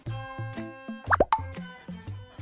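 Playful background music made of short, evenly spaced plucked notes over a bass line. A little after a second in, two quick gliding cartoon 'bloop' sound effects come in over it, the loudest sounds here.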